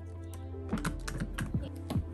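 A quick run of small plastic clicks and taps, about five, as a roll of clear tape on a plastic reel hub is handled and fitted into a desktop tape dispenser, over steady background music.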